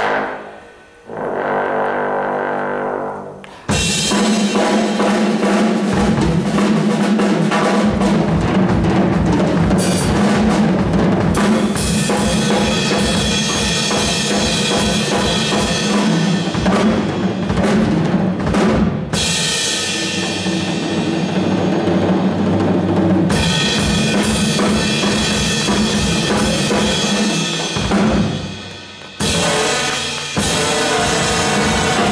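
Live big-band jazz: saxophones, trumpets, trombones, keyboard and drum kit playing together, with the drum kit driving a steady beat. After a couple of short phrases, the full band comes in loud at about four seconds, and it breaks off briefly near the end.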